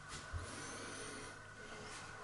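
Quiet small-room tone with a faint steady hiss, and one soft low bump about a third of a second in.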